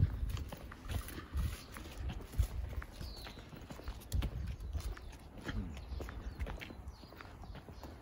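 Footsteps on an asphalt road: uneven soft thumps and scuffs of people walking.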